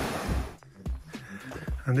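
Shallow mountain stream rushing over boulders and a small cascade, cut off abruptly about half a second in; a quieter stretch with a few faint knocks follows.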